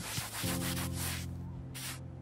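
Hand rubbing across a painted wooden surface in three swishing strokes, the last one short near the end, over a low sustained music chord that comes in about half a second in.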